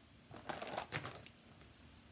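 Card stock and crafting supplies being handled and gathered up on a tabletop: a short cluster of rustles and clicks about half a second to a second in.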